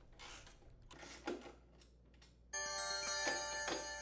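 Electronic alert chime of several bell-like tones sounding together, starting suddenly about two and a half seconds in and ringing on: the warning cue that marks a caution icon. Before it, faint clicks and handling noise.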